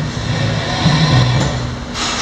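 Music playing from a 2008 Ford F-150's factory dash radio through the cab speakers while its volume knob is turned.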